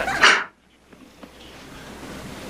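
A short burst of voice at the start, then a sudden drop to faint background noise that slowly grows louder.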